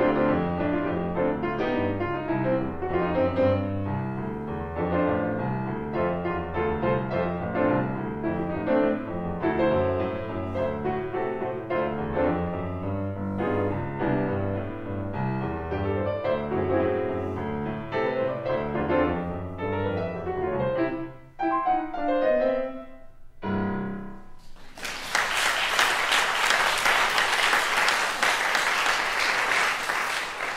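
Yamaha Disklavier grand piano played solo in a jazz style. Near the end the playing breaks into a few final chords, and the audience then breaks into loud applause.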